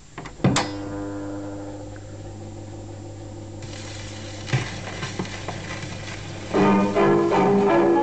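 Instrumental band introduction played from a 1927 78 rpm shellac record: a chord strikes about half a second in and is held, a haze of hiss rises a few seconds later, and the full band comes in louder near the end.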